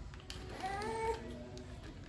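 A single short, high-pitched cry, meow-like, starting about half a second in and rising slightly before it breaks off, with a fainter tone trailing after it.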